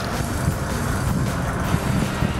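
Boat engine running steadily under a wash of wind and sea noise.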